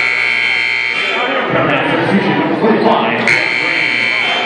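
Basketball arena buzzer sounding a steady buzz that cuts off about a second in, then sounds again near the end, over crowd chatter.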